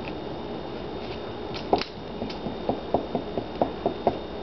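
Small homemade Newman-style pulse motor running with a steady whirr as it charges a battery. From about halfway it is joined by a run of irregular light clicks and taps.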